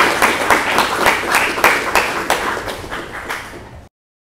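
Audience applauding, dense clapping that thins and fades over the last second, then cuts off abruptly just before the end.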